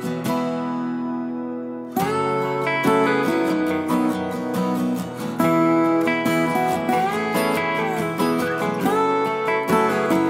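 Instrumental acoustic guitar music: a chord rings out and fades for the first two seconds, then the playing picks up again with plucked and strummed notes.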